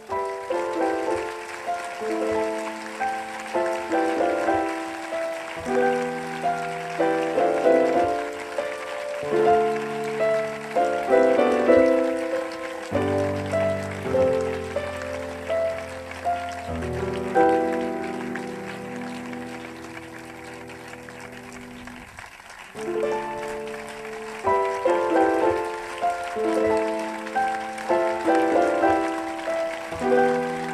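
Instrumental piano music: notes played in quick phrases, then a held low chord that fades away for several seconds about halfway through before the phrases start again.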